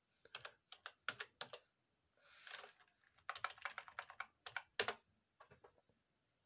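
Typing on a computer keyboard: irregular runs of quick key clicks, with a short soft hiss about two seconds in.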